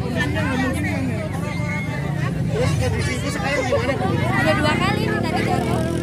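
Crowd chatter: many people talking at once, with no single voice standing out, over a low steady rumble.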